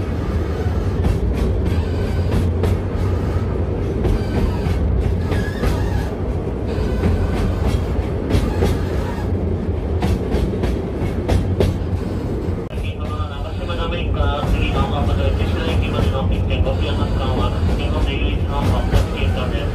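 Ikawa Line narrow-gauge passenger train running, heard from inside the carriage: a steady low rumble of wheels on rail with frequent short clicks and clatters from the track.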